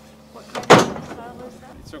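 A single loud metal clunk with a short ring, as a missile is pushed onto its launcher rail.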